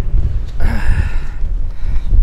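Wind and handling rumble on a camera microphone while the camera is being moved with clothing pressed over it. A breathy rush of noise comes about half a second in and lasts about a second.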